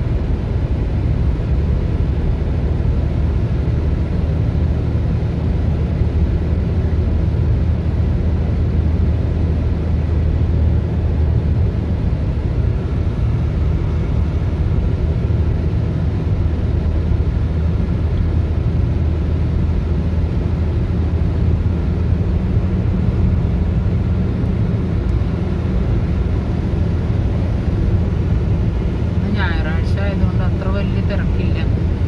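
Steady low road rumble inside a moving car's cabin at highway speed: engine and tyre noise with no sudden events.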